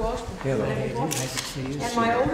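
Voices talking over one another in greeting, with press still-camera shutters clicking several times in the second half.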